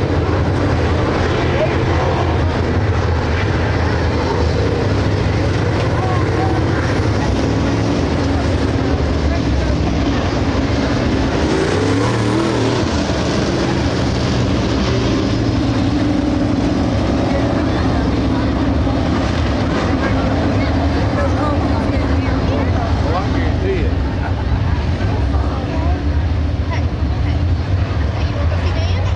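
Dirt late model race cars with Chevrolet 602 crate V8 engines running laps on a dirt oval, their engines a steady loud drone. About twelve seconds in, one car's engine note sweeps up and down as it passes close by.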